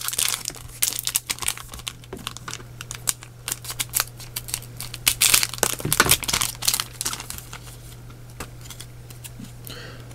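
Foil booster pack of Japanese Pokémon cards crinkling in the hands and being torn open: a scatter of sharp crackles, busiest in the first six seconds and sparser after. A faint, steady low hum sits underneath.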